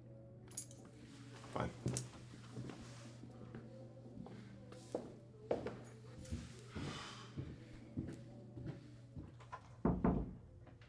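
Quiet room tone with a steady low hum, broken by a scattered series of light knocks and clicks.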